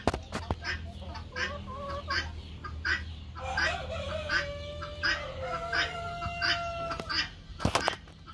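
A flock of chickens clucking in short, repeated calls, with two long drawn-out calls in the middle. A couple of sharp knocks come near the end.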